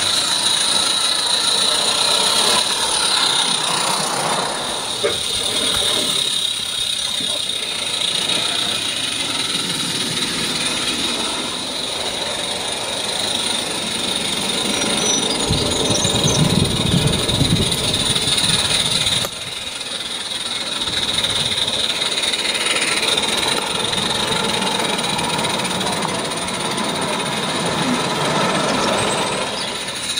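Voices of people talking in the background over the running of a small live-steam garden railway locomotive on 32 mm gauge track. The sound changes abruptly about two-thirds of the way through.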